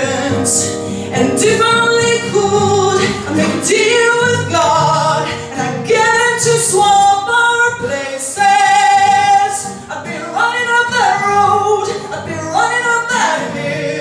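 A woman singing a song into a microphone, phrase after phrase, holding one long note about eight seconds in.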